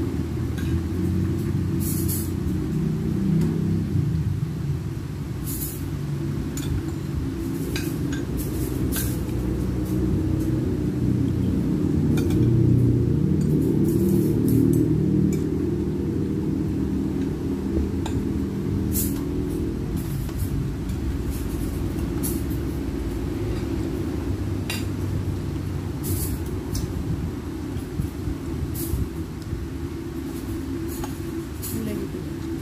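Metal spoons and forks clinking against ceramic plates and bowls while eating, a scattering of short, sharp clinks, over a constant low rumble.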